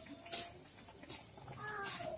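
A short pitched animal-like call near the end, after two brief hissing noises.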